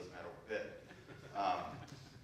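A man speaking in a presentation, his voice in a room.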